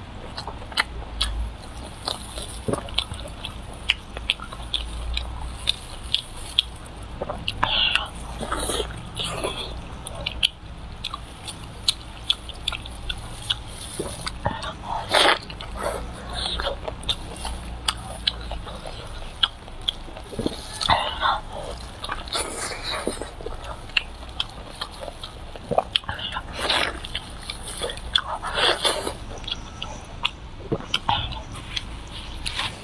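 Close-miked eating sounds: a person biting and chewing braised, sauce-glazed meat, with many small wet clicks and smacks and a few louder bursts of mouth noise.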